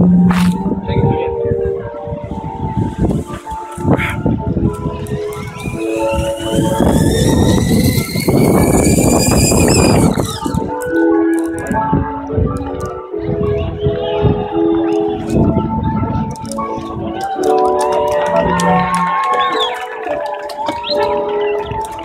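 Background music of held notes throughout; about six seconds in, a rushing noise with a rising whine builds for about four seconds and then cuts off suddenly: a zipline trolley running along the cable and coming to a stop.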